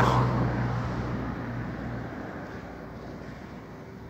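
A motor vehicle running with a steady low hum, fading gradually as it moves away; the hum is gone by about halfway through.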